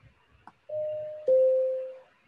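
Two-note chime of an online whiteboard's countdown timer, signalling that time is up. A higher note comes about two-thirds of a second in, then a lower, louder note that rings and fades away.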